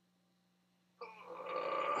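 A man's drawn-out voiced exhale, about a second long, starting abruptly halfway through, made while he holds a standing forward bend with his hands down at his toes.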